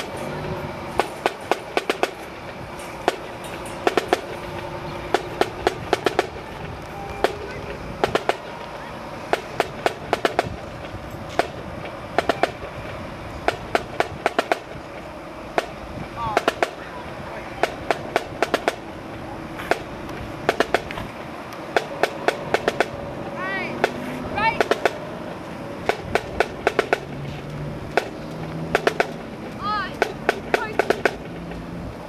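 A single marching drum beating a marching cadence: sharp strokes in quick clusters of several beats, repeating throughout, with voices underneath.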